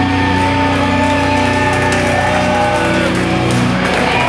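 A live hardcore metal band's distorted electric guitars and bass holding sustained, ringing chords, with a short falling pitch slide about three seconds in.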